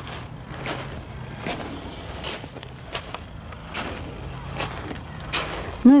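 Footsteps crunching on a beach of small pebbles and coarse sand, one step about every three-quarters of a second.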